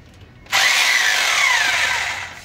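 Electric drill running in a burst of about a second and a half, starting about half a second in, its pitch falling as the bit bites into the wall.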